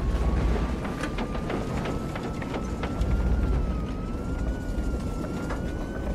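Airliner cabin rumble in turbulence, a deep steady roar with scattered rattles and clicks, under a thin high tone that slowly rises in pitch.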